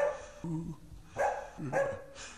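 A donkey braying: a string of rough hee-haw calls, about two a second, with harsh high notes alternating with lower ones that bend in pitch.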